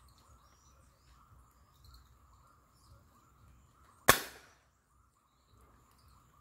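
A single air rifle shot about four seconds in: one sharp crack that dies away within half a second.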